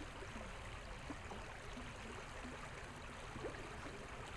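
Shallow creek flowing over a rocky riffle: a faint, steady rush of running water.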